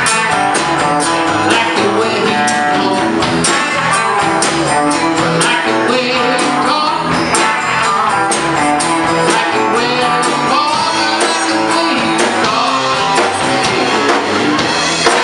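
Live country-rock band playing: strummed acoustic guitar, electric guitar and bass guitar over a steady drum-kit beat.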